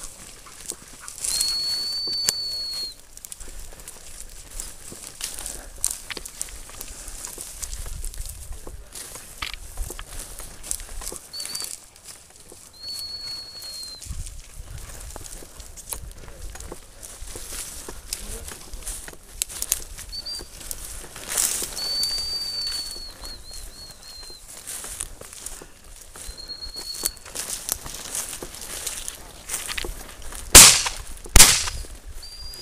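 A dog whistle blown in several steady high-pitched notes at one pitch, some short pips and some held a second or two, one breaking into a warble near the end. Underneath is a constant crackling and rustling of dry brush being pushed through on foot.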